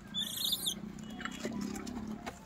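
Gray langur giving one short, high-pitched squeal about half a second long, near the start.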